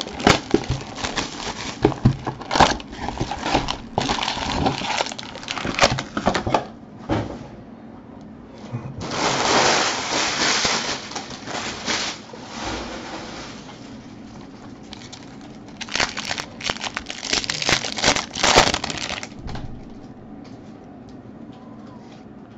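Trading-card box and packs being torn open by hand: plastic wrap and cardboard crinkling and crackling in bursts, then card-pack wrappers ripped open.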